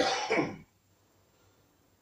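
A man clearing his throat once: a short, rough burst of about half a second at the start.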